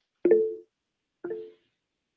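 Two short chime-like tones about a second apart, each with a sudden start and a quick fade, the first louder.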